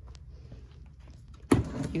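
Low steady room hum, then about one and a half seconds in a wooden nightstand drawer is pulled open with a sudden knock and slide.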